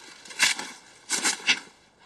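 Digging in packed avalanche snow by hand and shovel: a short scrape about half a second in, then three more in quick succession in the second half.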